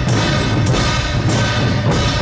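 Procession music: a drum beaten at a steady pace, roughly three beats every two seconds, over sustained pitched instruments.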